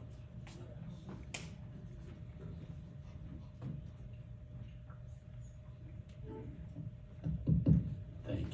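Microphone handling noise: a live stage mic being adjusted on its stand gives scattered small knocks and, near the end, a few louder low thumps, over a steady low room rumble and a faint steady hum.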